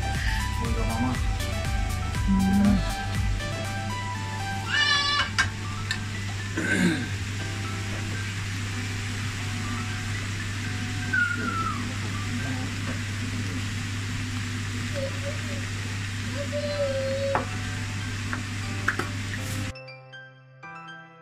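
Vegetables sizzling in a frying pan as they are stirred with a wooden spoon, as an even hiss over a steady low hum. Background music with a beat plays for the first few seconds, and the sound cuts off just before the end.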